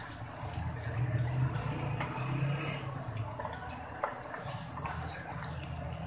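Kidney masala sizzling as it fries down in an aluminium karahi, near the end of the bhunai when the oil begins to separate, with a spatula scraping through it and knocking against the pan about twice. A steady low hum runs underneath.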